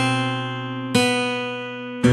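Acoustic guitar playing two single notes about a second apart, each plucked and left to ring and fade: a C on the first fret of the B string, then the open B string a half step lower.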